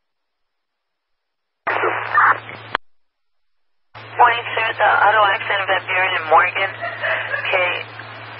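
Police radio traffic heard through a scanner: silence, a one-second transmission that cuts off with a click, then after a short pause a dispatcher or officer talking over a steady low hum.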